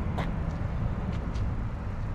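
Steady low outdoor rumble with a few faint clicks.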